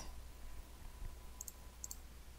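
Faint computer mouse clicks, two quick pairs in the second half, over a faint steady low hum.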